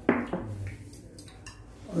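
Metal spoon and chopsticks lightly clinking against porcelain bowls during a meal of dumplings, opening with a short, sharp sound. A voice says an appreciative "eou" at the very end.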